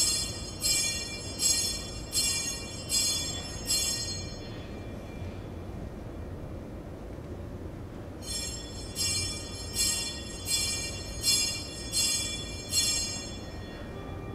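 Altar bells rung in two runs of six or seven quick, bright strokes, about three strokes every two seconds, with a pause of about four seconds between the runs. This is the ringing at the elevation of the host and then of the chalice during the Eucharistic prayer of the Mass.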